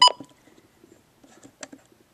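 Midland WR-100 weather radio's keypad giving one short beep as a button is pressed, followed by a faint click a little later.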